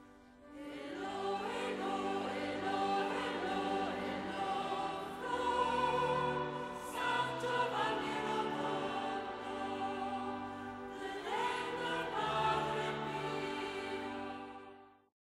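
Choral music: a choir singing long, slowly changing chords, coming in about half a second in.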